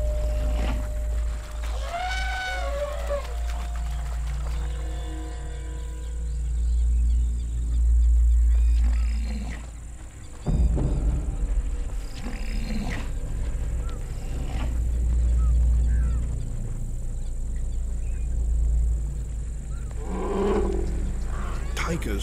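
Calls of alarmed wild animals over a deep, continuous rumble: a run of short rising-and-falling calls about two seconds in, more calls later and near the end, and the rumble breaking off briefly about halfway through.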